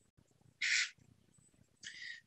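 Two short breathy hisses from a person's mouth, one about half a second in and a fainter one near the end, in a pause between spoken sentences.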